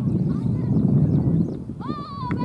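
Wind buffeting the microphone as a steady low rumble. Near the end a high, wavering call begins.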